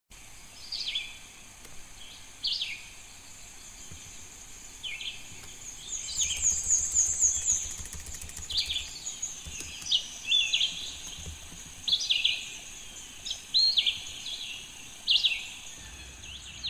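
Wild birds calling: a short, downward-sweeping call repeats every second or two, and a rapid high trill from another bird comes in about six seconds in. A steady high hiss runs underneath.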